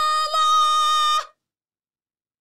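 A woman's voice holding one long, high, steady vocal note that cuts off suddenly a little over a second in.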